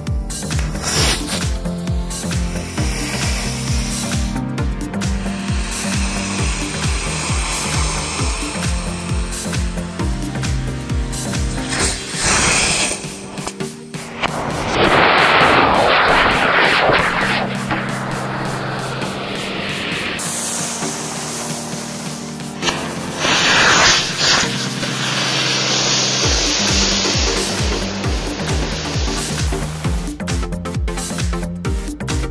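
Electronic dance music with a steady beat, overlaid by the harsh hiss of small firework rockets burning on a toy car. The hiss is loudest about halfway through and again in the last several seconds.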